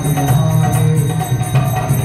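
Kirtan music: a sustained low drone under a moving melody, with ringing hand cymbals keeping a steady beat.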